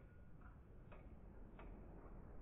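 Near silence: faint background hiss with a few faint, irregular clicks.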